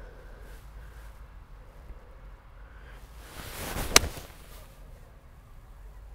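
A golf iron swing: a whoosh of the clubhead that swells for under a second and ends in a single sharp click as the forged-faced Cobra King Forged Tec iron strikes the ball, about four seconds in.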